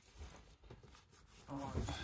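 Faint rustling and scuffing of work gloves being pulled onto the hands, then a man says a short word near the end.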